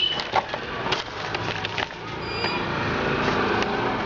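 A paper receipt being unfolded and handled close to the microphone: crackling and rustling, with sharp crinkles in the first two seconds and a denser rustle after.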